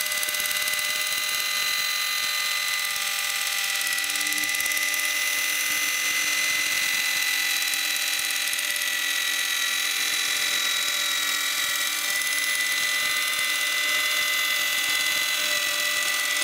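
JML hands-free electric can opener running on a tin, its small motor giving a steady whir with a high whine as it works its way round the rim cutting the lid.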